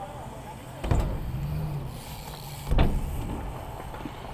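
Two dull thumps, one about a second in and one near the end, over a low steady rumble.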